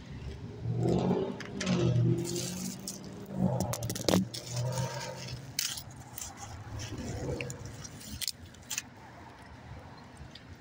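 Handling noise from a phone being moved about in the hand: rubbing and scattered sharp knocks and clatters, with a low muffled hum of voice in the first half.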